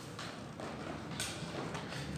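Faint handling noise from a paper worksheet being shifted, with a couple of light knocks or rustles about a fifth of a second in and just over a second in, over low room hum.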